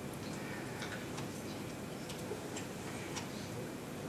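Faint, irregular clicking from a computer being operated to open a page in the browser, over a steady low room hiss.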